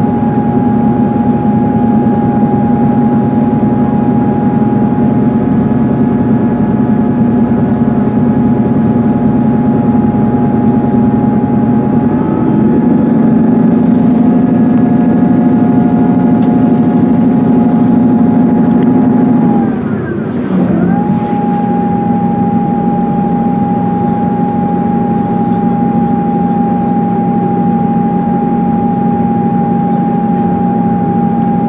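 Class 158 diesel multiple unit's underfloor diesel engine and transmission running under power, heard from inside the carriage as a steady whine over a low drone. About twenty seconds in the sound dips for a moment and the low note settles lower, typical of the transmission changing up.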